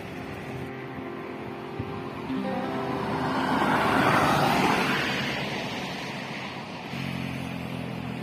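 A car, a Toyota Innova, passing close by: its tyre and engine noise swells to a peak about halfway through, then fades away, over background music.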